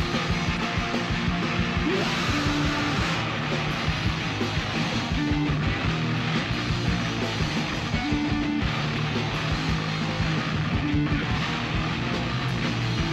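Rock band playing live: electric guitar, bass guitar and drums, with a riff that repeats about every three seconds.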